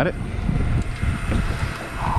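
Wind buffeting the microphone on an open boat at sea: an uneven, gusting low rumble.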